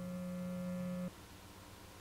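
Electric bass guitar through an amplifier, a single note left ringing as a steady tone after a burst of distorted playing, then cut off abruptly about a second in.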